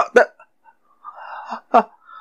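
A voice stammering short 'uh' sounds between pauses, with a brief breathy sound in the middle.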